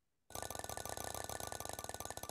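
An online spin-the-wheel game's ticking sound effect starting about a third of a second in: rapid, evenly spaced clicks as the wheel spins.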